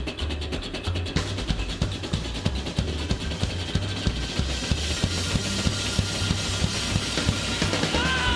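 A live rock band playing an instrumental passage: a fast, steady drum-kit beat over upright double bass and acoustic guitar, with no vocals.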